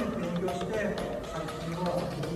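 A man speaking, with music playing quietly underneath.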